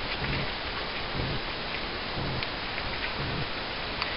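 Steady hiss of background noise, with a few faint low sounds about once a second.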